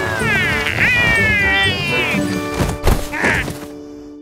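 Cartoon baby dinosaur squealing with delight in high, gliding calls over children's background music, with a sharp thump about three seconds in.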